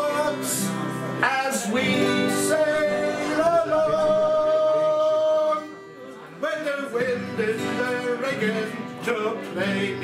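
Several acoustic guitars strummed together with a singer. A long sung note is held in the middle, then a brief lull before the playing picks up again.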